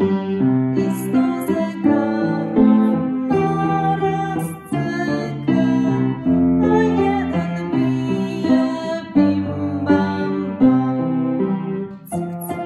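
Piano playing a children's song accompaniment in steady, changing chords.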